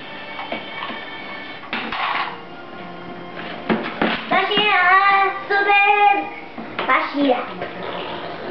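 Toy cars knocking and rattling in a plastic bin, over music playing in the room. Midway a high child's voice sounds out for a couple of seconds, the loudest thing heard.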